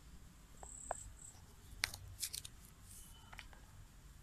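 Faint, scattered sharp crackles and pops from burning fireworks, a handful of them, the loudest around the middle, with a brief faint high whistle just before.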